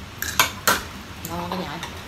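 Spoons and chopsticks clinking against ceramic bowls and plates as people eat, with two sharp clinks within the first second. A short bit of voice follows a little past halfway.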